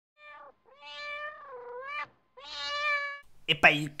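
A domestic cat meowing three times: a short meow, a long drawn-out one that dips and then rises at its end, and a steadier one. A voice starts speaking just before the end.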